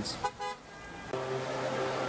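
Street traffic with a brief car horn toot near the start. From about a second in, steady held tones come in.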